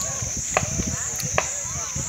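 Sharp knocks repeating at an even pace, about one every 0.8 seconds, like chopping strokes, over a steady high-pitched whine and faint voices.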